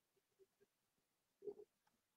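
Near silence: room tone, with a few faint short low sounds, the clearest about one and a half seconds in, and a tiny click near the end.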